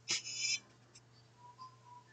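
A woman's short breathy laugh at the start, then quiet room tone.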